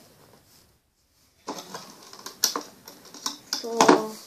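Clicks and taps of a clear plastic loom and its hook being handled on a wooden table. A quiet first second and a half, then a quick run of sharp clicks, with a short voiced sound near the end.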